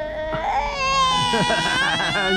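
A toddler starts crying about half a second in: one long, high wail held to the end.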